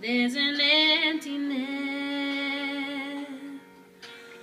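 A woman singing into a handheld microphone. She wavers through an ornamented phrase for the first second and a half, then holds one long note that fades out near the end.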